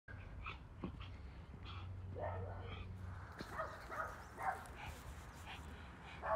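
A small dog giving a string of short, faint whines and yips, the excited cries of a dog eager to go on its walk.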